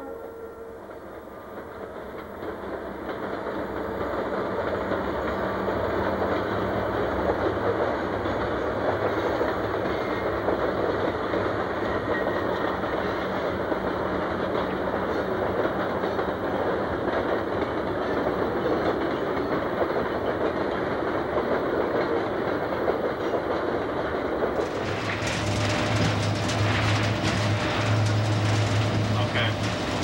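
A diesel-hauled freight train rolling past, wheels clattering over the rail joints in a steady rumble that builds over the first few seconds. About 25 seconds in it changes abruptly to a locomotive cab ride: a steady low engine drone with track noise.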